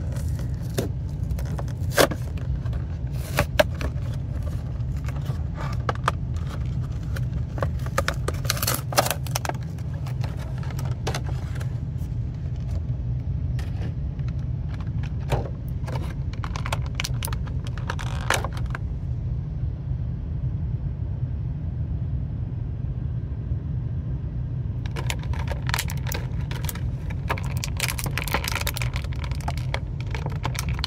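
A cardboard box and a clear plastic blister tray being opened and handled by hand: crinkles, scrapes and sharp clicks, pausing for several seconds about two-thirds of the way through, over a steady low hum.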